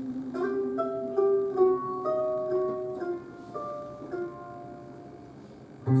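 A lone plucked acoustic string instrument in a bluegrass band picks a slow run of single ringing notes, which die away after about four seconds.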